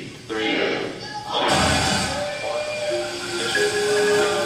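A voice is heard for about the first second. About a second and a half in, a sudden loud rumble with hiss sets in, and it gives way to held, ringing mallet-percussion tones from the percussion ensemble.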